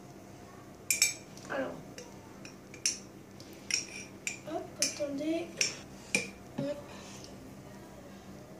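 Metal spoon clinking against the inside of a glass mustard jar as mustard is scooped out: a series of sharp, irregularly spaced clinks.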